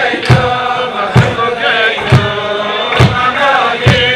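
A group of men singing a Chassidic niggun together, with a steady beat of thumps keeping time, about one a second.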